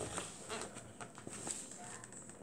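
Faint, irregular light taps and scrapes of a butter knife working at a taped cardboard box, prying to get it open.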